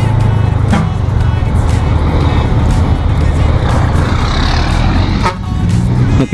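Motorcycle riding along a highway: steady engine rumble mixed with wind rushing over the on-board camera's microphone, with a couple of brief knocks.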